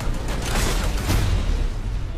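Loud, dense movie-trailer sound mix: music laid with booming hits and whooshes, heavy in the low end throughout.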